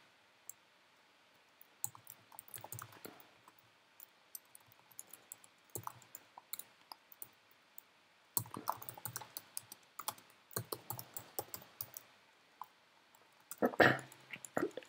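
Typing on a computer keyboard: quick runs of key clicks in several bursts, with short pauses between them.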